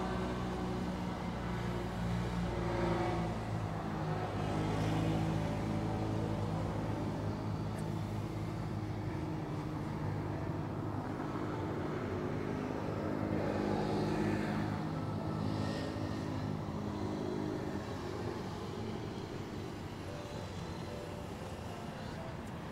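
A motor vehicle's engine running steadily, with road traffic; it gets quieter near the end.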